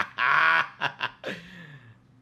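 Men laughing: a loud burst, then a few short gasping pulses that trail off.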